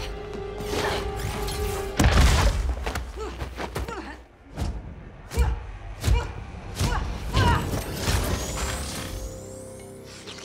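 Orchestral film score under a hand-to-hand fight: a run of heavy thuds and hits, the loudest about two seconds in and several more in quick succession in the second half, with furniture being knocked about.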